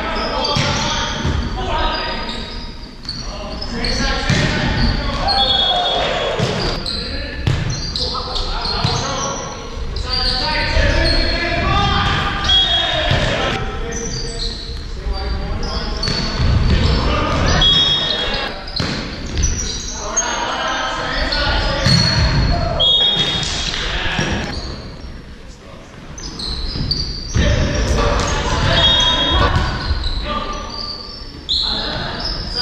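Indoor volleyball rally in a gym: sharp slaps of the ball off hands and arms, short high sneaker squeaks on the hardwood floor, and players' shouts, all echoing in the large hall.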